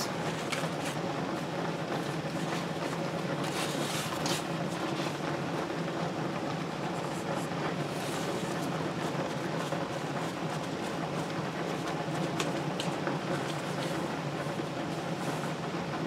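Dry corn husk rustling and crackling faintly now and then as it is folded shut around a tamale, over a steady low hum.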